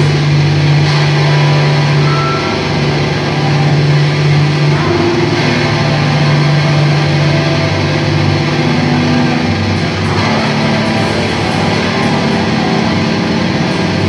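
Distorted electric guitar and bass through amplifiers holding a loud, sustained drone with no clear drumbeat. The held low note changes pitch a few times.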